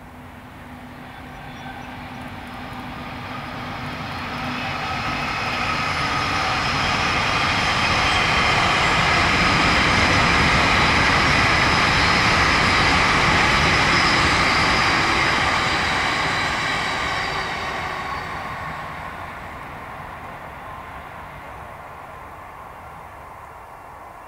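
Colas Rail Class 70 diesel locomotive, with its GE PowerHaul V16 engine, hauling a long train of cement tank wagons past. The engine and wheel noise build up, are loudest about halfway through as the wagons roll by, then fade away.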